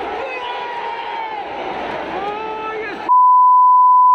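Crowd noise and shouting voices, then about three seconds in a loud, steady single-pitch censor bleep cuts in and blots out everything else, masking a swear word.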